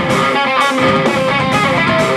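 Live metal band playing loud: an electric guitar riff of quick, changing notes over drums, with cymbal crashes about every half second.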